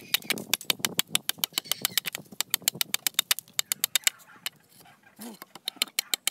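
Quick, light chops of a machete blade into a green sang mon bamboo culm, several strikes a second, cutting an opening in the side of the tube. The chopping pauses briefly about four seconds in and starts again near the end.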